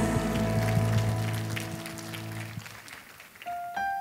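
A worship band's final chord holds and fades away over about two and a half seconds, with scattered hand clapping. Soft single electric-piano notes start near the end.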